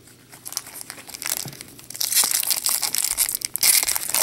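A foil Pokémon booster pack wrapper crinkling and tearing open, starting faintly and becoming loud and dense about halfway through. The wrapper is shredding as it tears.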